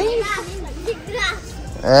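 People talking, a child's voice among them, over background music.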